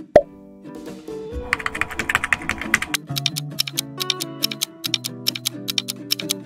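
Quiz sound effects over background music: a single pop just after the start, a burst of rapid typing-like clicking about one and a half seconds in, then fast, steady ticking of a countdown timer from about halfway through.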